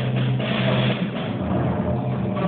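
A percussion ensemble playing: a steady low pitched tone held under a run of quick drum strokes and metallic shimmer.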